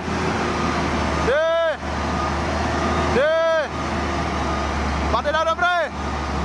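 A Shacman X3000 tractor unit's diesel engine running with a steady low drone as the truck moves slowly. Over it, a voice calls out a long rising-and-falling 'deh' about every two seconds, with a quicker run of short calls near the end.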